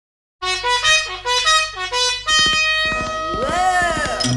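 Opening of a 1960s pop record: a horn plays a quick run of short, stepping notes, then holds long notes while a note swoops up and back down near the end.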